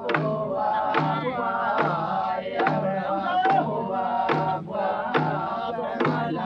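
Group of voices chanting a Motu hehona, a traditional song about the lakatoi trading canoes, in a 1950s field recording. A steady beat sounds a little more than once a second under the singing.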